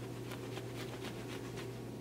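A billiard cue ball rubbed briskly back and forth on a fold of pool-table cloth, a soft scuffing scratch at about four strokes a second, done to charge the ball with static electricity.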